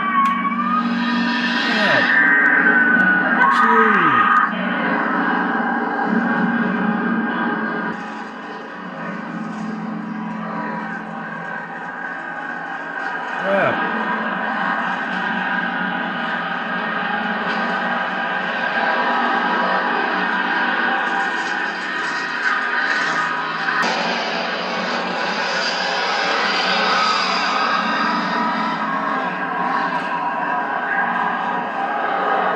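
Horror film soundtrack playing back: high gliding cries in the first few seconds, over a dense droning score of held metallic tones that runs on steadily, with one sharp accent in the middle.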